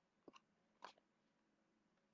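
Near silence broken by a few faint, short clicks: a quick double click about a quarter second in and another just before a second in.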